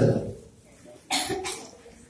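A man's single short cough close to the microphone, about a second in.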